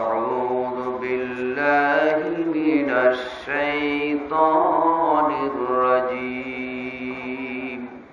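A man chanting in long, drawn-out melodic phrases that slide in pitch, in the manner of Quran recitation.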